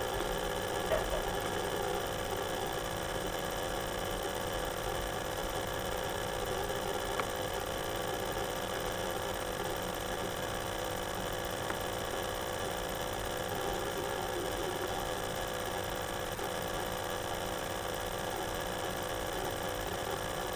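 Steady machine hum with several held tones and a light hiss from the running Lenovo ThinkPad X61 laptop, with a few faint clicks about one, seven and twelve seconds in.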